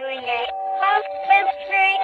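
Animated plush peek-a-boo bunny toy singing its song in a high, synthetic-sounding voice over a simple backing tune of steady held notes.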